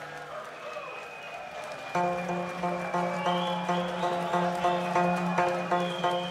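Live band music on Korean traditional instruments, including gayageum zithers: a soft passage, then about two seconds in a louder pattern of repeated notes over a held low note comes in.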